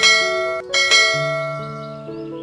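A bright notification-bell sound effect from a subscribe-button animation, struck twice less than a second apart, each strike ringing and fading away, over soft background music.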